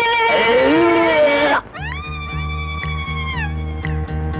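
A long, high, wavering voice is held for about a second and a half and breaks off. Film background music then starts: a steady bass line pulsing in a regular beat, with a high sliding tone that rises, holds and falls away.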